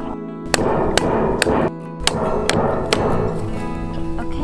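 A hammer knocking on a PVC pipe: about five sharp strikes spread over a few seconds, over background music.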